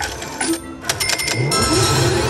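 Cash Machine slot machine reels landing with a run of clicks, then steady electronic tones near the end as the symbols settle.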